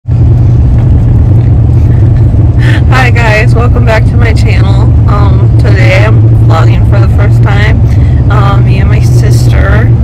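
Steady low rumble of a car driving, heard from inside the cab, with a voice over it from about three seconds in.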